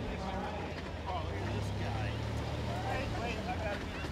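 Side-by-side utility vehicle's engine running steadily at low speed as it drives slowly past, with people's voices talking in the background.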